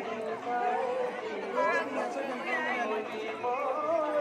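Several people talking over one another in casual group chatter.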